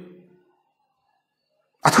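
Near silence between a man's spoken phrases: his voice trails off in the first half-second, then comes back loud and sudden just before the end.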